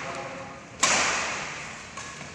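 Badminton racket striking a shuttlecock once, a sharp smack a little under a second in that echoes briefly in the hall, as part of a rally.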